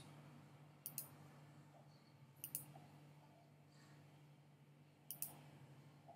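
Three faint computer mouse clicks, spaced a second or more apart, over a faint steady low hum.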